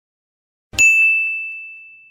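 A single bright bell-like ding sound effect, struck about three-quarters of a second in: one clear high tone that rings out and fades over about a second. It marks the subscribe-and-bell button.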